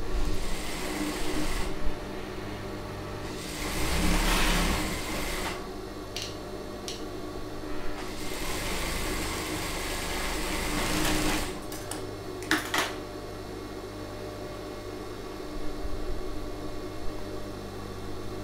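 Industrial sewing machine stitching in three short runs, the last about three seconds long, with its motor humming steadily between runs and a few sharp clicks.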